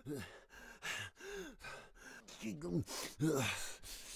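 A man's fight vocalisations: a quick series of about six short grunts and sharp, breathy exhalations, the sounds of effort, anger and pain while throwing and taking punches.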